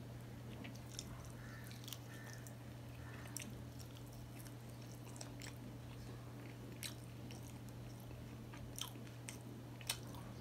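A person chewing a mouthful of rice and mashed vegetable eaten by hand, with short wet mouth clicks and smacks scattered through, the loudest just before the end. A steady low hum runs underneath.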